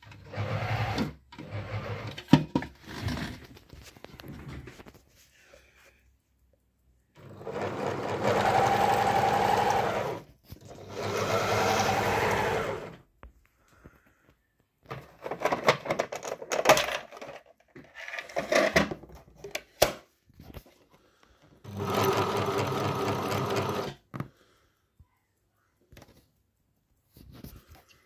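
Pfaff Variomatic 6085 sewing machine running under foot-pedal control in three runs of a couple of seconds each, its speed shifting within a run. Sharp clicks and handling knocks come in between.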